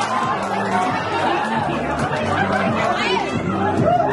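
Crowd chatter: many voices talking and calling out over one another in a large hall.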